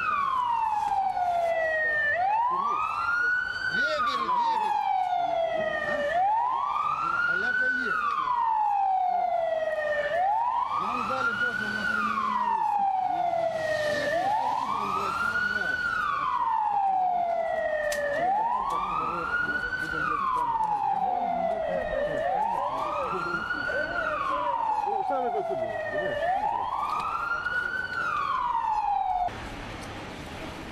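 A vehicle siren wailing, its pitch climbing quickly and sinking more slowly, once about every four seconds. It cuts off abruptly near the end.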